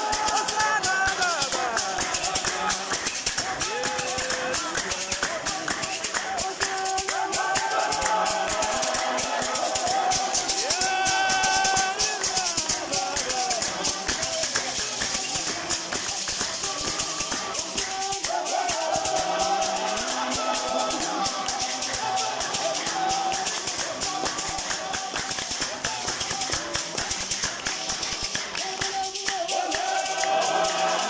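A congregation singing a Shona hymn together, with hand rattles shaking a steady beat over the voices.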